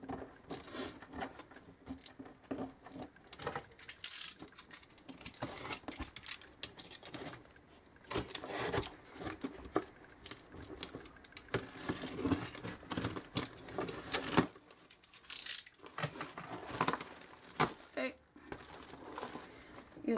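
Cardboard box being opened by hand: a snap-off utility knife slitting the packing tape, then the cardboard flaps pulled open and rustled, in irregular scrapes, taps and crinkles.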